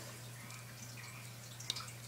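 Faint steady low hum of room tone, with a few light clicks near the end from small electronic parts being handled: a capacitor's wire leads and circuit boards between the fingers.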